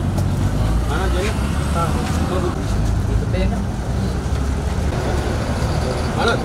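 A steady low rumble with faint talking from people standing around; nothing stands out above it.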